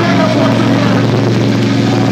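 Death metal band playing live at high volume, led by a steady, low, distorted held chord over a dense wash of band noise.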